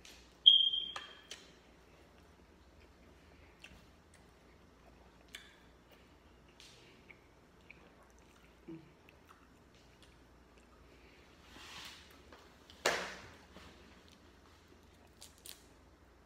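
Close-up eating sounds from a seafood boil: a fork clinks once against a glass dish with a short ring, a few soft clicks of food being handled, then a single sharp crack of a crab-leg shell being broken near the end.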